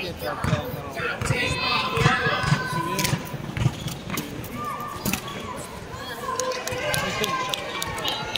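A basketball dribbled on a hard outdoor court, thumping about twice a second over the first four seconds, amid the quick footsteps of players running up court.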